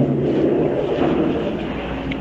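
A steady low hum with hiss, holding even through the pause and fading slightly toward the end.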